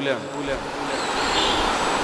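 A noisy rumble with no clear rhythm or pitch, growing louder through the pause, with a faint thin high tone above it.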